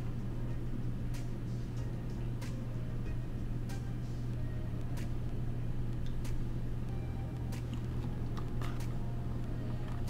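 Chewing potato crisps (Pringles): faint crunching clicks about every second and a quarter, over a steady low hum.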